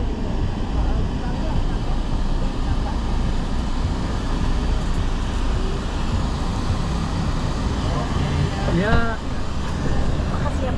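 Steady low rumble of road and engine noise heard from inside a moving minivan's cabin. A short burst of voice comes near the end.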